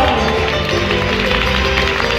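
Live band music: acoustic guitars and keyboard playing a Hawaiian song, heard in a brief instrumental stretch between sung lines.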